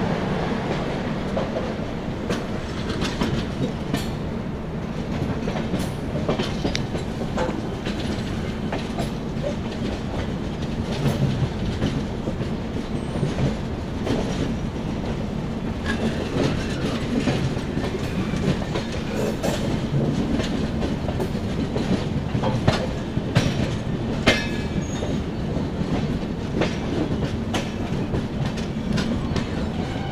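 Passenger coach of an Indian Railways express running over the track: a steady rumble with the wheels clattering irregularly over rail joints and points, a few sharper knocks after about twenty seconds.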